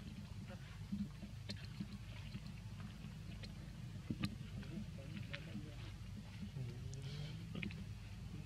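Faint outdoor background: a steady low rumble with a few scattered light clicks and crackles, and faint distant voices near the end.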